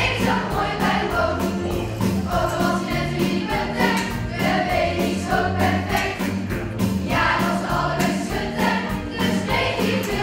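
Children's choir singing a cowboy song in a school musical, with instrumental accompaniment and a steady beat.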